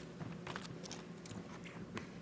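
Footsteps on a wooden stage floor, a string of light irregular taps about two to three a second, over a steady low hum.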